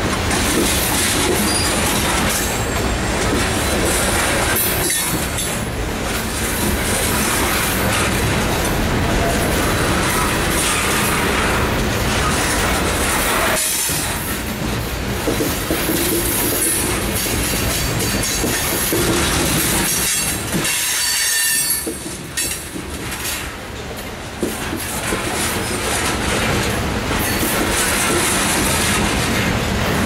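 Loaded coal hopper cars of a freight train rolling past close by: a loud, steady rumble and clatter of steel wheels on the rails. It goes briefly quieter about two-thirds of the way through, then returns to full level.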